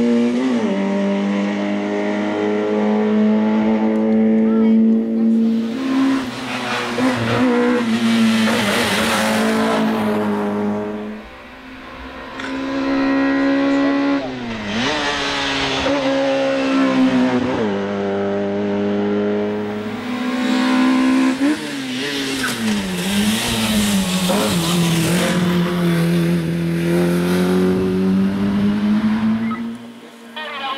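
Peugeot 205 Rallye race car's engine at high revs under hard acceleration, its pitch climbing and then dropping sharply again and again at gear changes and on lifting for bends. The car passes close by several times, briefly fading away about eleven seconds in.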